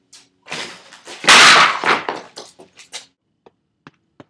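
A loud rustling, scraping burst lasting under a second, about a second in, followed by a quick run of light knocks and clicks that thins out toward the end: someone hurrying out through a doorway.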